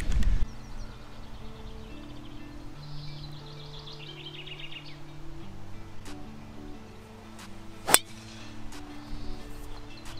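A single sharp crack of a driver striking a golf ball off the tee, about eight seconds in, over background music with slow sustained notes. Birds chirp briefly a few seconds in.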